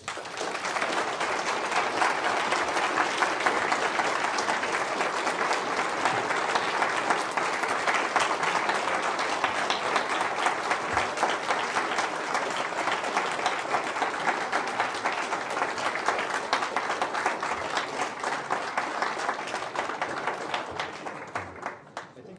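Audience applause: a hall full of people clapping steadily, dying away near the end.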